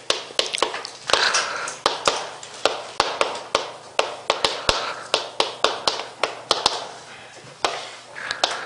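Chalk writing on a chalkboard: a quick, irregular run of sharp taps as the chalk strikes the board, with short scratchy strokes between them.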